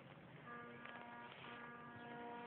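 Faint, steady buzzing hum held on one unchanging pitch. It starts about half a second in, breaks off briefly near the middle, then carries on.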